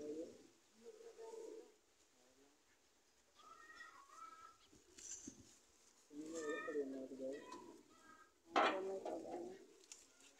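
Birds calling in several short, separate bouts, with low cooing and higher chirping calls; the loudest bout starts sharply near the end.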